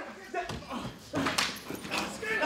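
Police patrol dog yelping and whining with excitement as it is sent in on a decoy, with one sharp sound near the end.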